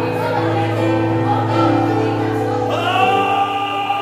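Gospel worship music: held chords with voices singing, and a louder voice coming in about three seconds in.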